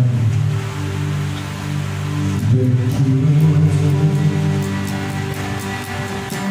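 Acoustic guitar playing ringing chords, with the strumming becoming more rhythmic in the second half.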